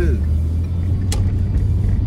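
Steady low road and engine rumble of a car being driven, heard inside the cabin, with a single sharp click about a second in.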